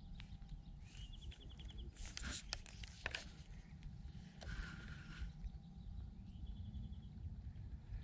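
Faint outdoor ambience: a low, steady rumble of wind on the microphone, with a few light clicks a couple of seconds in and two brief high-pitched trills, one about a second in and one about six seconds in.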